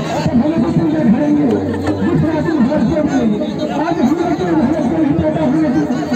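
Many voices talking at once: the steady chatter of a gathered crowd.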